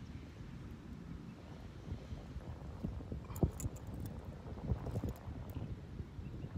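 Low wind rumble on the microphone with scattered light clicks and knocks from hands handling a small caught fish, most of them in the second half.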